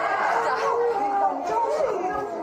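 A woman speaking Korean.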